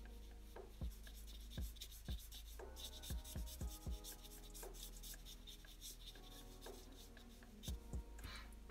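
Black marker drawing on paper: short, faint scratchy strokes as dark shading is filled in, with a few soft thumps scattered through.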